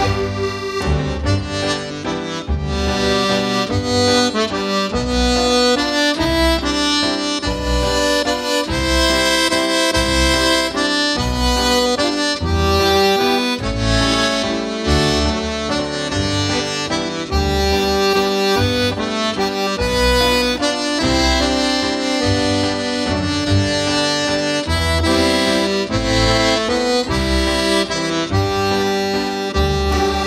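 Serenellini button accordion played solo in a slow Scottish air. The right-hand melody runs over left-hand bass notes and chords, which fall in a steady pulse about once a second.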